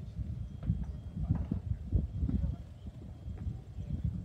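Wind buffeting an outdoor microphone: an uneven low rumble in gusts, easing a little in the second half.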